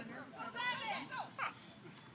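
Faint, distant voices, too indistinct to make out.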